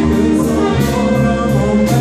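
A small live band playing: saxophone, double bass, guitar and drums, with a male singer. The bass moves from note to note underneath, and drum and cymbal strokes come every half second or so.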